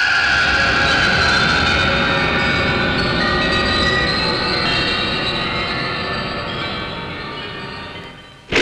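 Dramatic film background score: a loud sustained rumbling drone with held high tones, slowly fading away.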